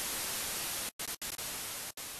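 Static hiss: an even white-noise rush that cuts out briefly three times, about a second in, just after that, and near the end.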